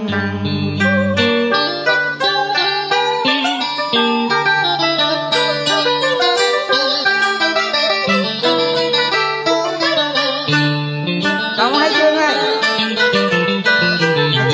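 Instrumental interlude of a Vietnamese tân cổ karaoke backing track, with no singing: a plucked guitar melody with wavering, bending notes over a stepping bass line.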